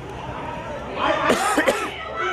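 People's voices near the microphone, with a sudden loud vocal burst about a second in that lasts under a second, cough- or shout-like.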